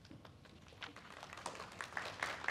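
Faint, scattered hand claps that grow quicker and denser toward the end as light applause starts.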